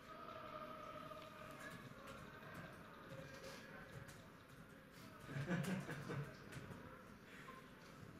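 Faint distant voices of a small group of supporters in an otherwise empty stadium stand, with a man laughing close by about five and a half seconds in.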